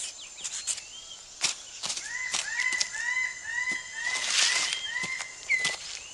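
Rainforest floor sounds: scattered light clicks and rustles of leaf litter as a six-plumed bird of paradise clears its display ground. A bird calls in a run of short arching notes, two or three a second, from about two seconds in to about five, over a steady high insect hum, with a brief rustle about four seconds in.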